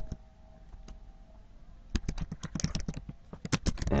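Typing on a computer keyboard: a few faint clicks, then a quick run of keystrokes from about halfway through.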